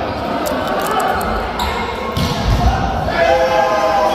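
Indoor volleyball rally: the ball being struck and hitting the court, echoing in a large hall, with players shouting near the end as the point finishes.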